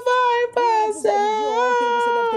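A high-pitched voice singing a few long, held notes, with a short break about half a second in and a step up in pitch near the middle.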